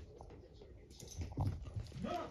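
A dog moving about on a carpet, with a cluster of soft thumps and taps about a second in.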